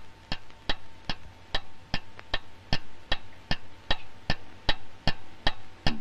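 Steady mechanical ticking, like a timer or clock, about two and a half ticks a second, over a faint high steady tone. It marks the countdown to the bomb's detonation.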